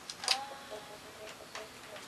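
Chickens clucking in short low calls, with a couple of sharp clicks near the start.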